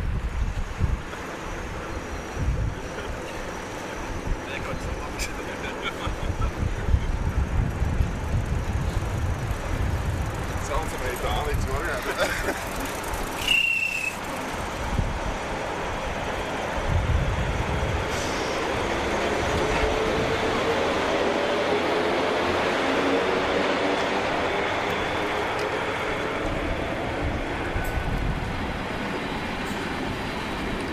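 NS 1200-class electric locomotive with an intercity train moving off past the platform. From the middle of the clip a hum rises slowly in pitch as it gathers speed, and there is a brief squeal partway through. In the first half, gusts of wind rumble on the microphone.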